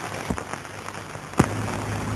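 Steady hiss and crackle of an old 1940s optical film soundtrack, with a couple of sharp clicks, the loudest about one and a half seconds in, after which a low hum comes in.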